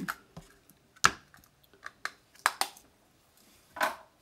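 A few light taps and knocks of craft supplies being handled and set down on a tabletop cutting mat, among them a plastic ribbon spool. The slightly longer knock comes near the end.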